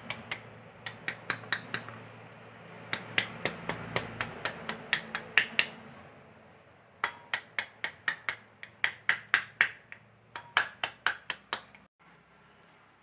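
Steel spoon tapping the back of a halved pomegranate held cut-side down, knocking the seeds loose: quick runs of sharp taps, about five a second, with short pauses between the runs.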